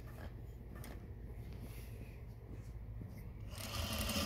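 Low steady hum of an industrial sewing machine's running motor with a few faint clicks. Near the end comes a louder rubbing rustle as layered quilting fabric is pushed across the bed under a metal quilting glide foot whose presser-foot pressure is set too tight for the fabric to slide freely.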